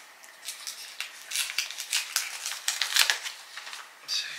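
A paper envelope being torn open by hand: a quick run of short paper rips and crackles.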